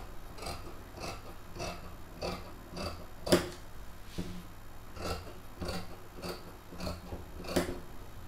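Dressmaking shears snipping through dress fabric to cut out a neckline, a steady run of cuts a little under two a second, with one louder snip about three seconds in.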